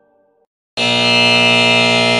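A musical note fades away. After a moment's silence, a loud, harsh, steady buzzer tone rich in overtones sounds about three quarters of a second in and holds.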